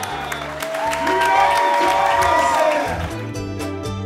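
Applause and cheering with voices whooping, over music with a steady bass line; the music's regular beat takes over near the end.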